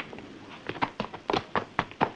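A quick run of short knocks and thuds, about six of them, starting about half a second in.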